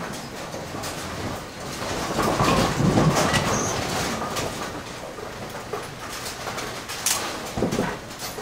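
Ten-pin bowling pinsetter machinery running in the machine room, a dense mix of heavy mechanical clatter and rattling over a steady din. It grows louder about two to four seconds in, and a few sharp knocks come near the end.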